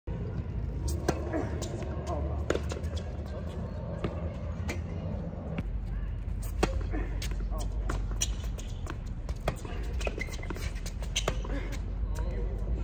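Tennis ball bouncing on a hard court and being struck by rackets: a string of sharp pops, the loudest being the serve a little past halfway, followed by rally hits and bounces. Voices are audible in the background.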